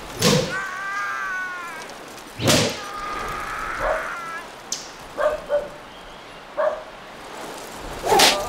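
Two sharp whip lashes about two seconds apart, each followed by a drawn-out cry of pain from the man being flogged, then a few short, weaker grunts.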